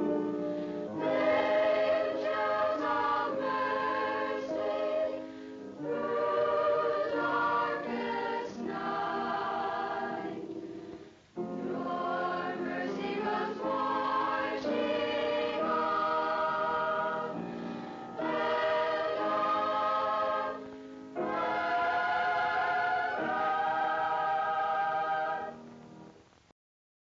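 A choir singing in long held chords, phrase by phrase, with a brief break about eleven seconds in.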